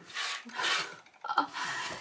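Hands rubbing and smoothing over a cotton fabric wallet as it slides on a wooden tabletop: a soft brushing rasp of cloth, with a short spoken word about a second and a half in.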